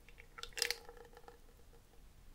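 Thick cane sugar syrup being poured from a bottle into a plastic protein shaker, with a short run of soft wet drips and squishes about half a second in.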